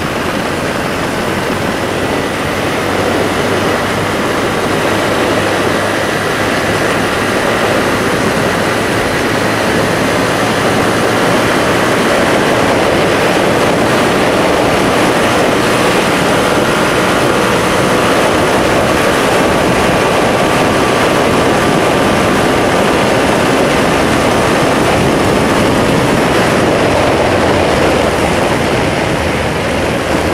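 Motorcycle running at highway speed: a steady rush of wind and engine drone, rising a little over the first few seconds and then holding even.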